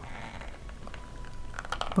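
Small scissors cutting around a small circle in a thin sheet, with faint snipping clicks, more of them near the end.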